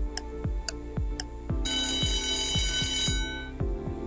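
Countdown-timer sound effect: steady ticking over a low pulsing beat, then an alarm-clock bell rings for about two seconds from about a second and a half in, signalling that the time to answer is up.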